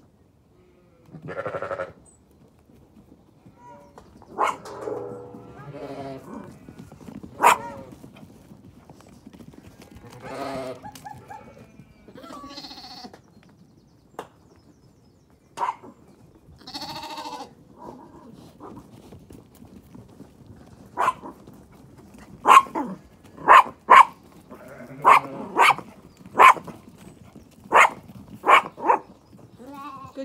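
Zwartbles sheep and lambs bleating now and then, followed in the last third by a run of short, sharp barks from a small sheepdog, the loudest sounds here, coming about one or two a second.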